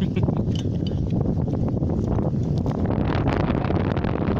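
Wind buffeting the microphone in a steady low rumble, with people's voices talking over it.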